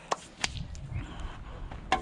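A few short, sharp knocks and clicks of things being handled and shifted about in a car's cab, the last and loudest near the end.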